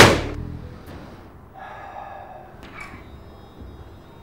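A single loud, sharp hit with a short ringing tail as the background music ends, after which only faint sounds remain.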